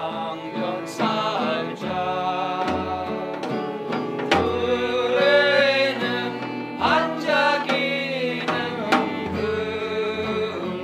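Acoustic guitar strummed while several voices sing together.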